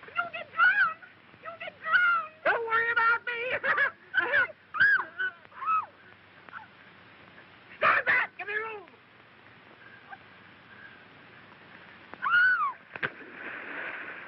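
Voices shouting short wordless calls, each rising and falling in pitch. There is a quick run of them in the first six seconds and another cluster about eight seconds in. After a quieter stretch, a last call and a sharp click come near the end.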